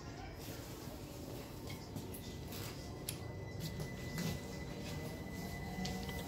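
Interior running noise of a London Overground Class 378 electric train between stations: a steady low rumble, with a thin steady high tone from about halfway and a faint motor whine rising in pitch near the end.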